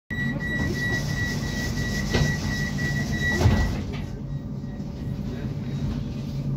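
Tram door-closing warning: a high, slightly pulsing beep sounds for about three and a half seconds, with two knocks as the doors shut. The second knock is the loudest and ends the beeping. A low steady hum from the standing tram runs underneath.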